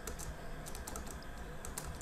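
Computer keyboard keys clicking in an irregular run of separate key presses as text is deleted.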